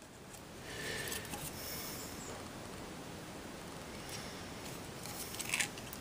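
Faint handling noise of fingers turning over a small electronics circuit board with its flex cable, with a few small clicks shortly before the end.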